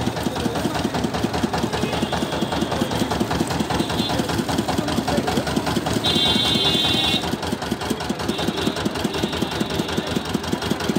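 Engine-driven sugarcane juice crusher running steadily with a fast, even chugging while cane is pressed through its rollers. A higher-pitched tone sounds for about a second around six seconds in.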